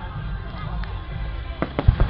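Aerial firework shells bursting at a display: two sharp bangs close together near the end, over a steady low rumble.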